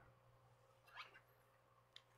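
Near silence: room tone with a faint steady hum and one faint short sound about a second in.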